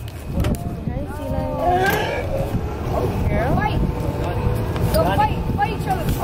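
A small tour boat's engine running with a steady low rumble and a faint hum, with short pitched calls breaking in over it every second or so.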